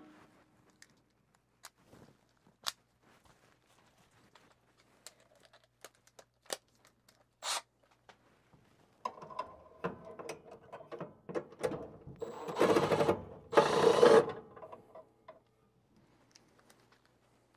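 Cordless drill/driver motor running in short bursts on the furnace's sheet-metal cabinet screws, with two louder, longer runs near the end. Scattered clicks and knocks of tool handling come before it.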